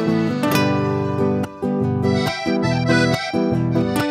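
Instrumental introduction to an Andean song played on acoustic guitars, a mandolin and a piano accordion, with the accordion's chords prominent over the plucked strings. There is a short break about a second and a half in.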